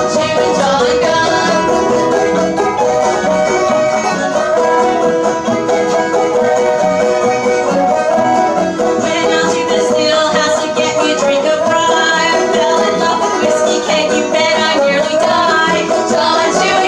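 Old-time string band playing a tune: banjo, fiddle and guitars together, with a steady run of plucked banjo notes under the melody.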